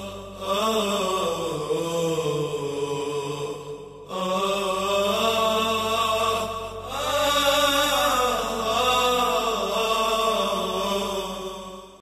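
Chanted vocal music: a voice holds long, wavering notes in three drawn-out phrases, and the last one fades out at the end.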